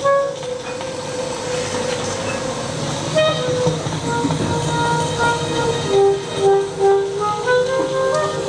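Saxophone in free improvisation: held, wavering notes over a hissing noise layer, turning to short, low notes that pulse about twice a second from about six seconds in.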